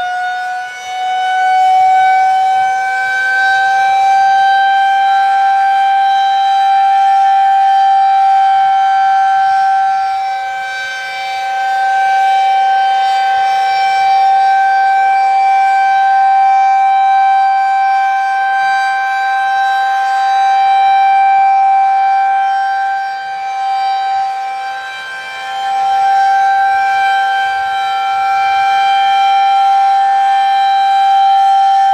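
Federal Signal 2001-130 single-phase electromechanical rotating siren sounding its steady Alert tone at close range, loud. Its pitch finishes climbing in the first couple of seconds as it reaches full speed, then holds steady, while the loudness dips and swells every ten seconds or so as the rotating horn turns away and back.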